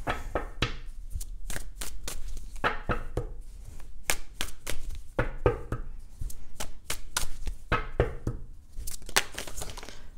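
A deck of tarot cards being shuffled by hand: quick, irregular slaps and flicks of the cards against one another.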